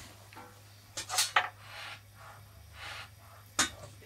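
Steady low hum from the switched-on guitar amplifiers, with a few brief soft noises in between.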